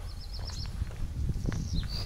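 A small songbird giving quick trills of short, high, evenly repeated notes, once at the start and again near the end, over a steady low rumble.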